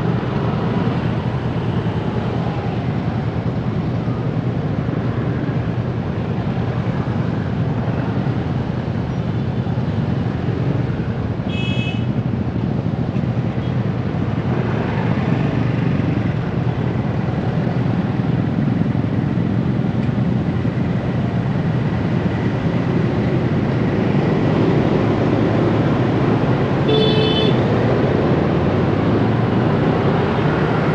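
Dense motorbike and scooter traffic: many small engines running around the rider at low speed, getting a little louder in the second half. A short horn beep sounds about twelve seconds in and another near the end.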